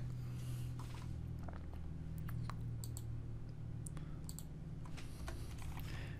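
Sparse computer keyboard keystrokes and clicks, a few at a time, over a steady low hum.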